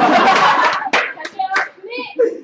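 A short burst of hand clapping from a group, mixed with voices, for about the first second, then talking.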